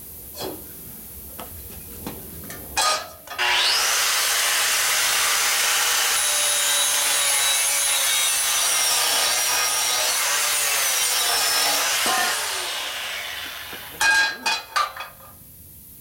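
Angle grinder with a cut-off disc cutting through steel welds, starting about three seconds in: its motor whine rises as it spins up, holds under the grinding noise, then falls away as the disc winds down after about twelve seconds. A few sharp metal knocks follow near the end.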